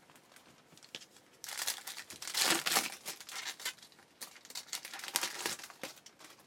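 A foil trading-card pack wrapper being torn open and crinkled by hand, in two spells of ragged crinkling, the louder one a little before the middle.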